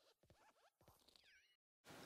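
Near silence: only the very faint fading tail of the animated logo intro's sound, with a moment of dead silence just before the end.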